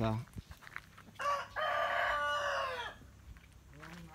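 A chicken crowing: a short first note, then one long held note that falls off at its end, from a little over a second in until about three seconds in.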